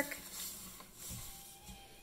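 Paper strips slid and shuffled by hand across a wooden tabletop: a soft scraping rustle, strongest in the first half second and then dying down.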